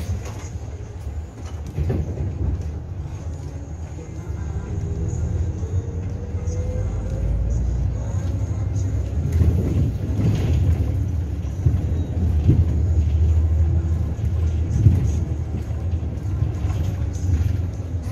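Ride noise inside a natural-gas (CNG) city bus on the move: a steady low engine and road rumble, with a faint rising whine about six seconds in and occasional knocks and rattles from bumps in the second half.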